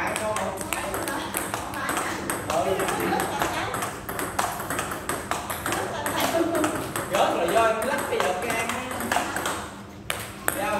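Table tennis forehand rally: a steady run of sharp clicks as the celluloid ball is struck by the bats and bounces on the table, dropping away just before the end.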